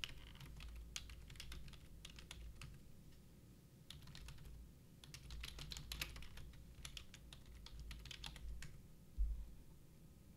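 Typing on a computer keyboard: irregular runs of key clicks, with a low bump near the end.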